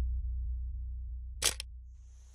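A camera shutter click sound effect, a quick cluster of sharp clicks about one and a half seconds in, over a low bass tone that fades away.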